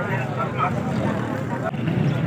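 People talking, over a steady low background rumble.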